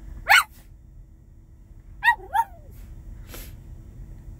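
Small dog vocalizing back in a 'talking' exchange: a short, loud call sweeping upward about a quarter second in, then two shorter whining calls about two seconds in, and a brief puff-like noise a little past three seconds. A steady low vehicle rumble runs underneath.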